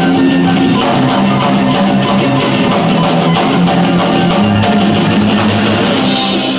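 A rock band playing an instrumental passage: guitars over a drum kit keeping a steady beat.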